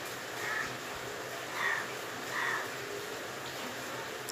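Three short bird calls, spaced about a second apart, over a steady background hiss.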